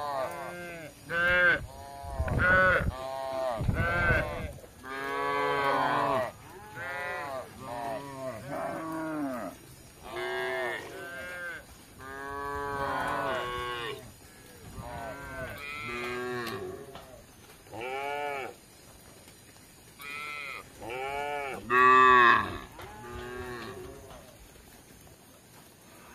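Cattle mooing over and over, many short calls that rise and fall in pitch and often overlap, the loudest about two seconds before the end. Two brief low rumbles come a couple of seconds in.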